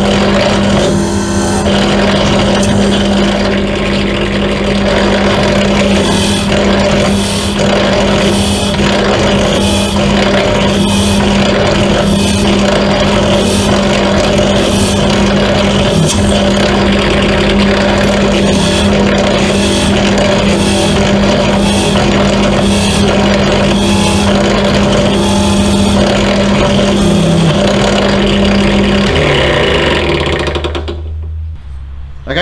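Bench pedestal drill running steadily, its bit cutting the propeller's bolt holes through a drill jig, with repeated cutting noises about once a second. The motor hum cuts off near the end.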